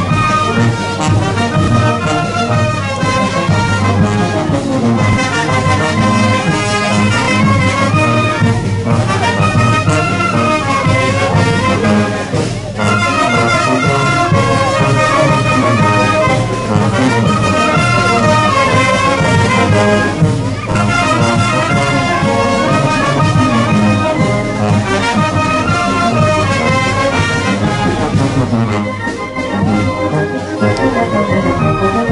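Brass band playing lively dance music, trumpets and trombones over a steady low beat, with a short lull near the end.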